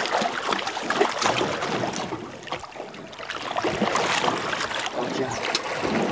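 Irregular splashing and sloshing of water as a hooked yellowtail kingfish thrashes at the surface beside the boat while it is grabbed by hand. There is a quieter lull about halfway through.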